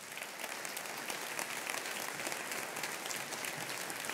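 Audience applauding, a steady mass of hand claps holding at an even level.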